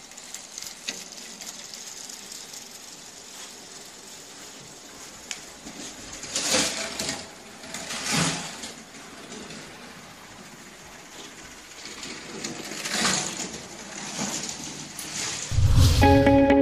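A LEGO roller coaster model running: the small plastic train rattles along its brick track, swelling louder about six and a half, eight and thirteen seconds in as it passes close.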